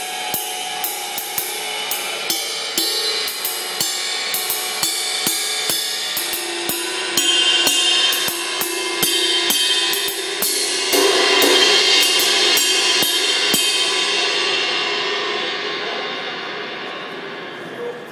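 Paiste Twenty Custom Collection Full Ride cymbal played with a drumstick: a steady pattern of about two to three strokes a second over a building wash, swelling louder around two-thirds of the way through. The strokes stop and the cymbal rings out, fading away.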